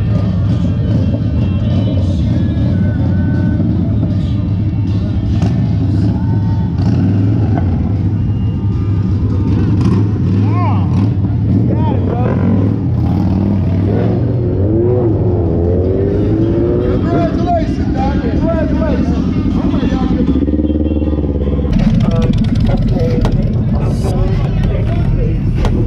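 Motorcycle engines running as bikes ride off one after another, under music and crowd voices; a heavier engine rumble comes in close near the end.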